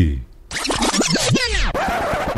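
A record-scratch style rewind sound effect: a quick run of sweeping pitch glides starting about half a second in, settling into a steady hiss near the end.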